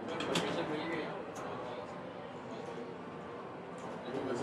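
Low, indistinct talking, with a couple of light clicks in the first second and a half.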